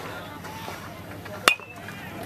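An aluminum baseball bat striking a pitched ball once, about one and a half seconds in: a sharp ping with a brief metallic ring.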